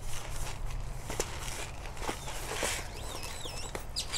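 Soft scrapes, rustles and small clicks of granular fertilizer being scooped and poured onto potting soil in a container. A bird's warbling whistle is heard in the background a little past the middle.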